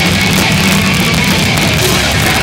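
Hardcore punk band playing live and loud: electric guitars, bass and drum kit in a dense, steady wall of sound.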